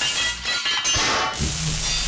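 Theme music of a TV show's opening titles, mixed with hissing and metallic clanking effects as junk metal parts assemble, settling onto a sustained low note near the end.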